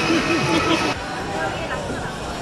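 Crowd noise in a busy pedestrian street, with voices of people nearby. About a second in, the sound drops suddenly to quieter street noise.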